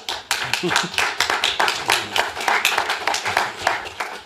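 Audience applauding: a dense run of hand claps, with some voices mixed in.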